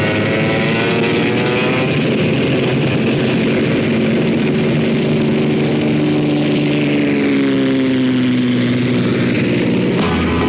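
Single-engine Cessna light aircraft's piston engine and propeller at full power on its takeoff run and climb-out. The engine's pitch rises over the first couple of seconds, holds, then slides down over the last three seconds as the plane goes by.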